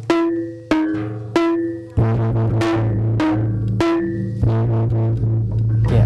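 Lengger Tapeng ensemble playing: kendang hand-drum strokes with ringing struck bronze pot-gong tones, like kenong, over a steady low gong hum. The strokes come about every 0.7 s at first, then the playing grows denser.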